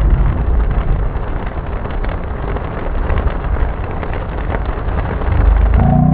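Heavy rain pelting a car's roof and windshield, heard from inside the moving car over a steady low road rumble. A brief rising pitched sound comes in near the end.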